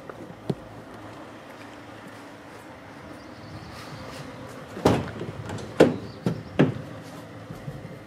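A van's cargo door being unlatched and opened: a few loud, sharp clunks of the handle, latch and door panel about five to seven seconds in, over steady background noise.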